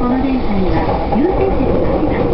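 Steady low rumble of a passenger train running, heard from inside the car, with a voice speaking over it.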